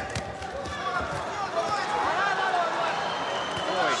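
Boxing arena crowd noise, many voices shouting at once, with occasional dull thumps from the ring.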